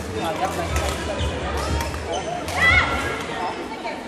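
Badminton hall din: overlapping voices from around the courts over a low rumble, with a short, loud, high squeak about two and a half seconds in.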